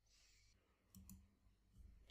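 Near silence with two faint computer-mouse clicks in quick succession about a second in, a double-click opening a downloaded file.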